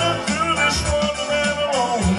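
A man singing live into a microphone over recorded backing music with bass and a steady beat, heard through a PA speaker; he holds one long note through the middle of the phrase.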